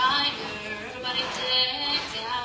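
A woman singing into a microphone, holding one steady note in the second half.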